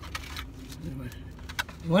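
Light clicks and rustling of a takeout food container and plastic fork being handled, over a low steady rumble inside a car cabin.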